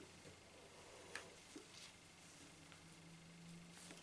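Near silence: room tone, with two faint ticks a little after a second in from the M40 gas mask's head straps being pulled tighter.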